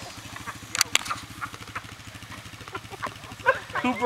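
An ATV engine idling steadily, with two sharp knocks about a second in.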